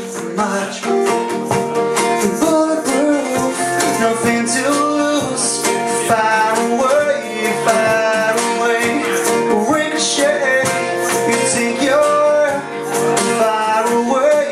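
Two acoustic guitars strummed together, with a male voice singing a melody over them.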